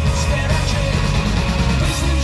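Pop rock band playing live over a loud PA: drum kit, electric guitars, bass and keyboards, with cymbal strokes about twice a second and a heavy bass. An instrumental stretch with no vocals.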